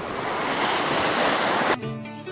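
Steady rush of surf washing on a sandy beach, which cuts off abruptly near the end as plucked-string guitar music begins.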